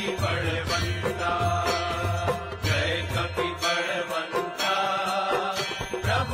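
Devotional aarti hymn: voices singing in Hindi over instrumental accompaniment with a sustained low drone.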